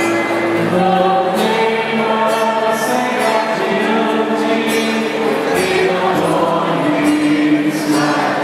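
A large group of people singing together, the voices holding long notes.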